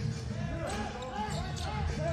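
Live court sound of basketball play: shoes squeaking on the hardwood and players' voices, with the ball being bounced and passed.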